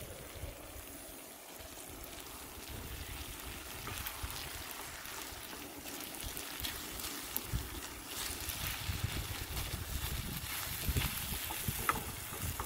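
Chicken and rice stir fry frying and sizzling in a pan on a high-pressure propane burner, stirred and scraped with a wooden spatula. Under it runs a steady rushing hiss with irregular low rumbles.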